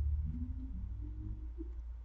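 A steady low hum, with faint closed-mouth sounds from a man chewing a mouthful of French toast sandwich.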